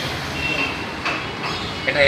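A vehicle's reversing beeper sounds two short, high beeps over a low background hum of traffic.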